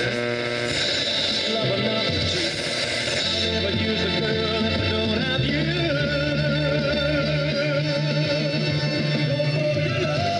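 The restored original 6-volt radio of a 1950 Ford playing a station broadcasting music: a singer with instrumental backing, heard through the car's dashboard speaker.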